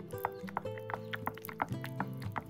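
Background music with a steady bass line, over irregular wet clicks and taps of a wooden spoon stirring thick aloe vera paste in a small glass.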